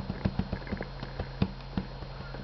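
Irregular light clicks and taps of hands handling a hard plastic Mr. Potato Head toy, its parts knocking, with two sharper knocks at the very start and about a second and a half in.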